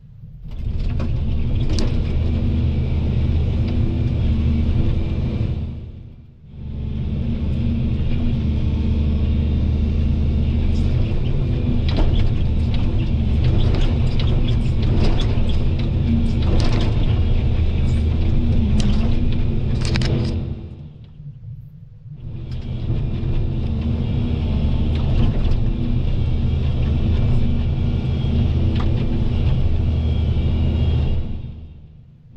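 Volvo EC220 DL excavator's diesel engine running steadily under load while it works, with a run of sharp cracks and snaps in the middle, typical of tree branches breaking. The sound drops away briefly twice.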